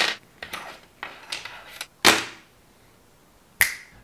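A few sharp clicks and knocks of hard 3D-printed plastic robot parts being handled on a tabletop. The loudest knock comes about two seconds in, with a short ring after it, and one more click comes near the end after a moment of near silence.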